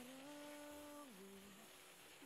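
Soft hummed melody in a woman's voice, holding long notes; the pitch steps up slightly near the start and drops lower about a second in.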